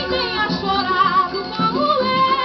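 Female voice singing a samba with a regional ensemble of plucked strings and percussion, played from a 1950 78 rpm shellac record, its sound cut off above the upper treble.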